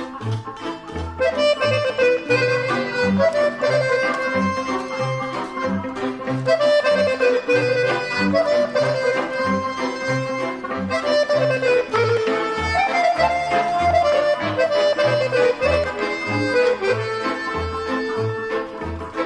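Romanian lăutărească band playing an instrumental passage without singing: an ornamented lead melody over a stepping bass line, at a steady, lively pace.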